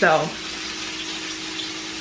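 Hamburgers frying in a pan on the stove: a steady sizzle with a low, steady hum underneath.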